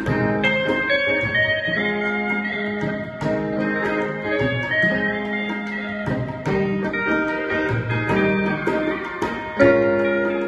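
Electric steel guitar playing a Hindi film song melody in long held notes, accompanied by an electric guitar and tabla strokes keeping a steady rhythm.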